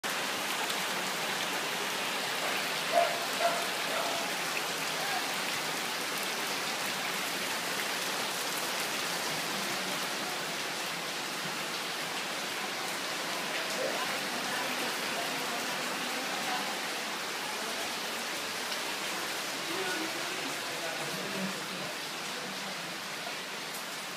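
Steady hiss of heavy rain falling during flooding, with two short sharp knocks about three seconds in.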